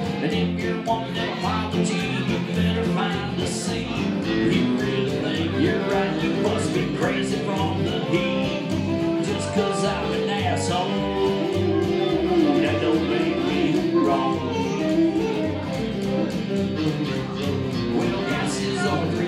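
Live country band playing the song, led by electric guitar over a steady beat.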